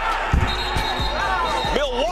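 Live basketball game audio: a ball thudding on the hardwood several times in the first second, then a steady high tone held for about a second, over background music.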